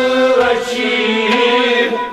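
Kashmiri Sufi music: men's voices singing one long held phrase together over harmonium and string accompaniment, the phrase tailing off near the end.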